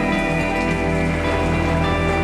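Soft, steady background music with a rain sound effect laid over it.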